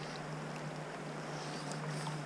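Steady rushing of the river current flowing past, with a low steady hum underneath and a few faint clicks.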